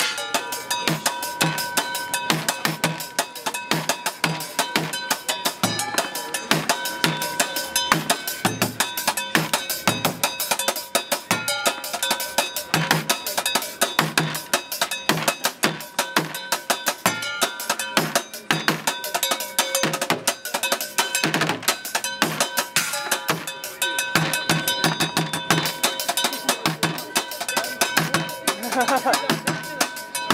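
Street drumming on upturned plastic buckets and metal pots, pans and lids: a fast, dense beat of dull bucket thumps under ringing metallic clanks.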